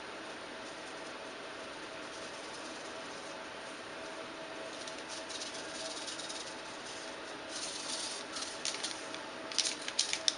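Dry brewing yeast being shaken from a cut foil sachet over the open fermenter: soft, scattered crinkles and ticks in the second half over a steady faint hiss and a faint steady hum.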